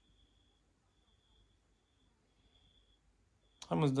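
Near silence: room tone with a faint high-pitched tone coming and going, then a man starts speaking near the end.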